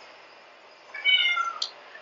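Domestic cat meowing once, about a second in, a short call that falls slightly in pitch: a hungry cat asking to be fed.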